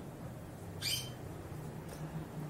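One short, high bird chirp just under a second in, over a faint steady low hum.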